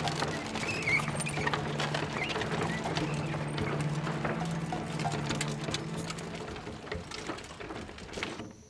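Horse hooves clip-clopping on a paved street as a horse-drawn cart is led along, heard as a string of irregular knocks and clicks.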